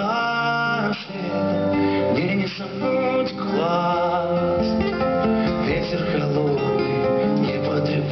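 Live pop song, an instrumental passage between sung lines: acoustic guitar playing under a melody of long, held notes.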